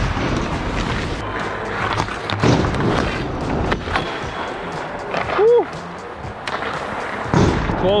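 Hockey goalie's skates scraping and carving on the ice, with scattered knocks of stick and pads, picked up close by a helmet-mounted mic. A short rising-then-falling tone sounds about five and a half seconds in.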